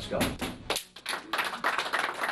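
A group of players clapping their hands quickly and unevenly, with voices calling out among the claps, starting about a second in after a man says "let's go".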